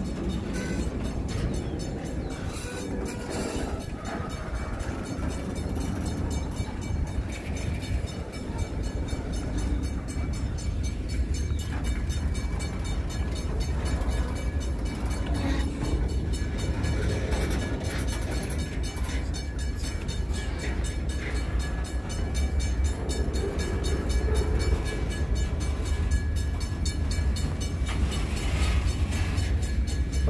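Empty covered hopper cars of a long freight train rolling past close by: a steady rumble of steel wheels on the rails that swells a little near the end.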